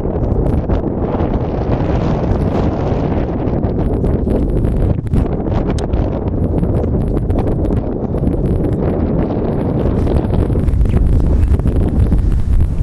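Wind buffeting the microphone: a loud, steady, gusty rumble.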